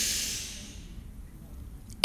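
A woman's deep inhale through the nose: a breathy hiss that is strongest at the start and fades away over about a second.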